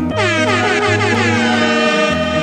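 DJ mix playing with a DJ air-horn effect: steady horn tones over the music, and a falling pitch sweep shortly after the start.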